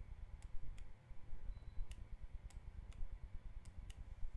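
Computer mouse clicking, about seven faint, irregularly spaced clicks, over a low steady rumble.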